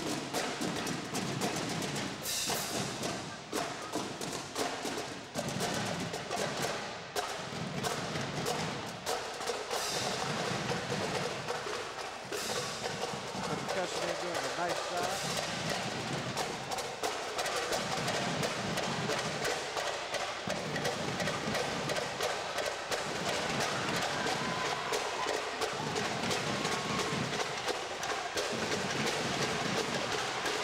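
Marching drumline of snare and tenor drums with a bass drum, playing a fast, dense cadence of stick strikes with a recurring low beat.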